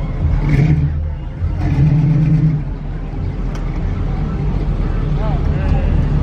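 A car engine running close by, swelling louder twice in the first few seconds as it is revved, with voices over it near the end.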